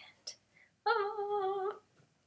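A woman's voice holding one steady, high hummed note for just under a second, starting a little before the middle.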